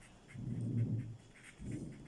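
Low, breathy rush of air close to the microphone, one lasting about a second and a shorter one near the end: a person breathing during a pause in speech.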